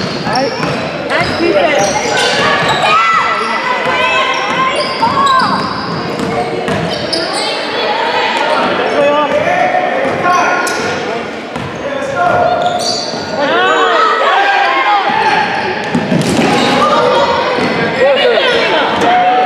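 A basketball bouncing on a hardwood gym floor during play, with voices calling out over it, echoing in a large gym.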